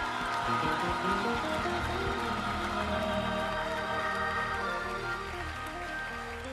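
Live gospel band music: sustained keyboard chords over a steady low bass, the chord shifting a few times.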